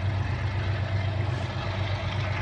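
Distant diesel locomotives of an approaching train running, a steady low rumble with a faint haze of track and engine noise above it.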